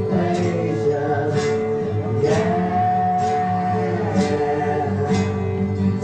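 Live acoustic rock ballad: strummed acoustic guitars under a male lead voice, which holds one long sung note a little over two seconds in, with a sharp high accent about once a second.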